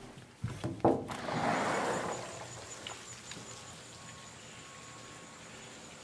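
A couple of knocks and a brief rush of air-like noise in the first two seconds, as the camera is carried through an open patio door. The rush then fades to quiet outdoor ambience with a faint, high, steady tone.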